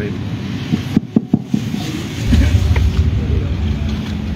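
Handheld microphone being picked up and handled: a few short knocks a little over a second in, then a steady low rumble from about halfway on.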